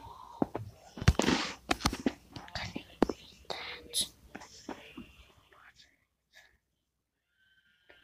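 Close, breathy whispering mixed with many sharp clicks and rustles, like a phone being handled against the microphone. About six seconds in it all drops away to near silence.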